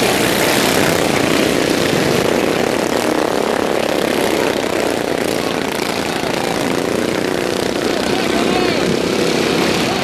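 A field of racing lawnmowers with single-cylinder overhead-valve engines running hard at high revs, their engine notes rising and falling as they pass.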